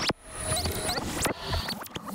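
A busy transition sound effect of squeaky pitch sweeps rising and falling over one another, with sharp clicks between them, leading into a staged skit.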